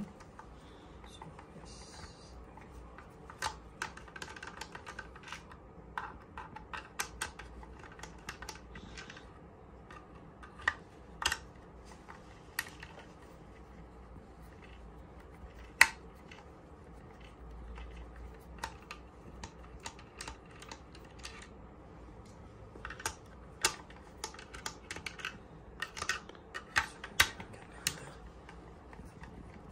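Irregular small clicks and taps of a screwdriver working screws out of a small air compressor's plastic housing, and of the plastic parts being handled. One sharp click about halfway stands out, and the clicks come thicker near the end.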